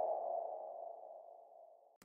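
Synthesized transition stinger under a title card: the ringing tail of a sustained mid-pitched electronic tone, fading steadily until it dies away about a second and a half in.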